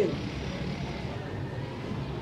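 Steady low background rumble with no clear events in it.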